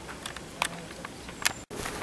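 Quiet outdoor ambience broken by a few sharp clicks, the loudest about half a second in and near the end. The sound cuts out for an instant just before the end.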